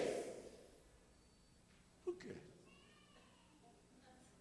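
Mostly quiet room tone, with one faint, short high-pitched cry about two seconds in.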